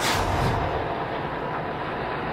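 A quick whoosh from the broadcast's replay-transition graphic, then the steady sound of a pack of ARCA stock cars running together at racing speed.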